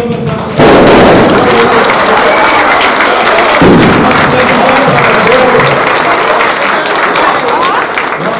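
A crowd applauding, breaking out suddenly about half a second in and keeping up steady clapping, with voices mixed in.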